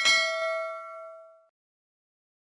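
A bell chime sound effect, struck once and ringing out, fading away over about a second and a half.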